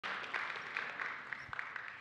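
Congregation applause with many scattered claps, dying away over two seconds.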